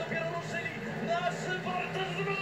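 Speedway race broadcast playing quietly from a television: a steady low hum from the racing bikes' engines, with faint voices.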